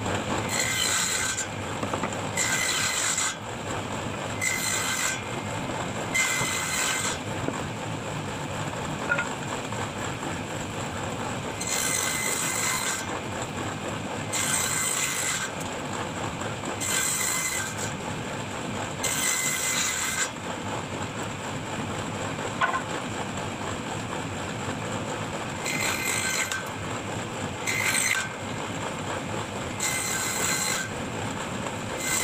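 Table-mounted circular saw running steadily, with about ten louder, harsher stretches of roughly a second each as wood is fed through the blade.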